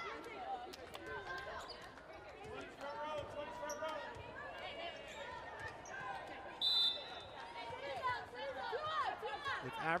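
A volleyball bounced on a hardwood court before a serve, with a short, sharp referee's whistle about two-thirds of the way in, over background chatter in the arena.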